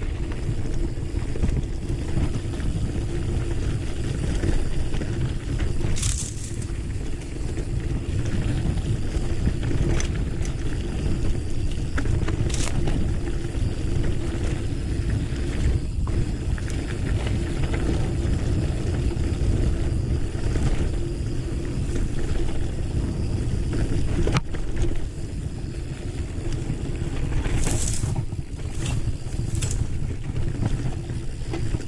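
Mountain bike rolling over a dirt trail, a steady low rumble from the tyres and the ride. A few short scratchy sounds cut through it, twice in the first half and once near the end.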